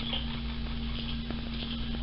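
Steady low background hum with one faint click a little past halfway.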